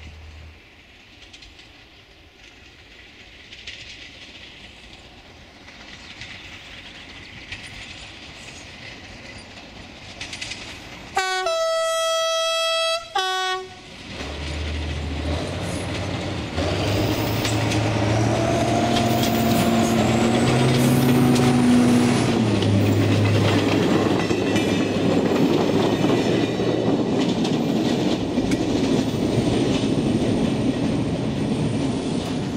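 SNCF X 2800-class diesel railcar (X 2830) sounding its horn once for about two seconds while still some way off, then approaching and passing close with its diesel engine working loudly. The engine note drops as it goes by, and the wheels click over the rail joints.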